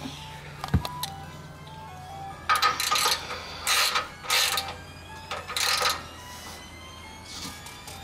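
Ratchet wrench tightening the chassis-ground bolt into the car's frame, heard as a click and then several short rasping bursts, with music playing in the background.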